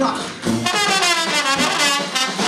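Trombone playing a short phrase in a traditional jazz band, starting about half a second in.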